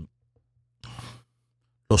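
A man's short audible breath at the microphone in a pause between phrases, about half a second long near the middle. Speech resumes near the end.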